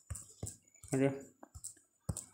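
Several short, sharp clicks of typing on a smartphone's on-screen keyboard.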